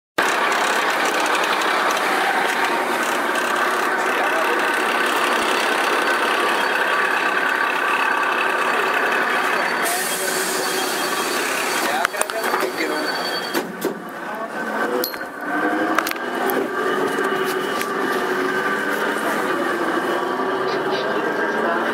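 Karosa B931E city bus running, a steady engine hum with voices mixed in. About halfway through comes a short burst of hiss, then several sharp clicks, and the engine's pitch shifts near the end.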